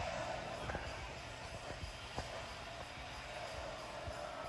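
Faint background music in a large store hall over a low steady room hum, with a couple of light knocks.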